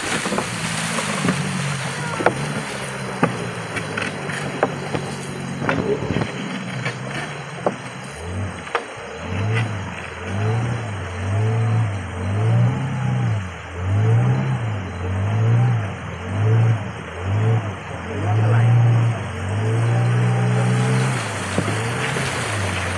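A boat's outboard motor running, its revs swelling and dropping about once a second, with scattered knocks in the first few seconds.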